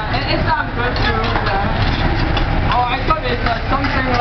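Busy restaurant room: several voices talking at once over a steady low rumble.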